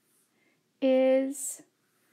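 Speech only: a woman reading one slow, steady-pitched word, 'is', about a second in, ending in an s hiss.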